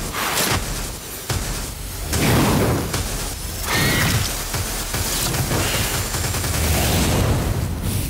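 Trailer sound effects: a string of loud booms and whooshing surges of noise, coming every second or two, ending in a fiery explosion near the end.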